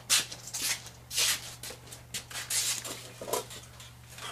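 Rustling and shuffling of a person moving right up against the microphone: several short bursts of cloth-like rustle with a few soft knocks, over a faint steady low hum.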